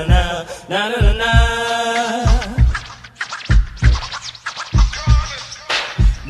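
Hip hop music over a heavy kick-drum beat: a sung vocal line in the first two seconds, then a stretch of turntable scratching before the singing comes back near the end.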